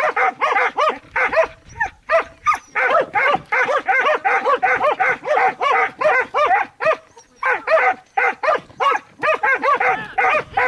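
A dog barking over and over, about three or four short barks a second, with brief pauses about two seconds in and again about seven seconds in.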